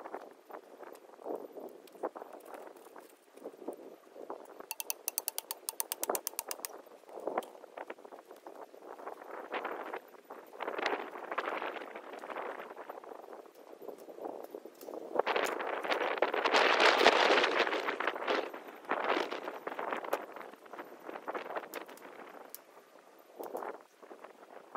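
Hand work on a welded-wire animal-proof fence: scattered clicks and knocks, a quick run of clicks lasting about two seconds around the fifth second, and a longer noisy rustle a little past the middle, the loudest sound.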